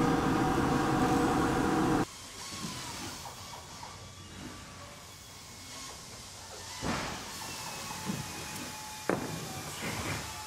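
Ventilation fan and laser engraver running together with a steady hum of several held tones, cutting off suddenly about two seconds in. After that there is only a faint low background with a couple of soft knocks.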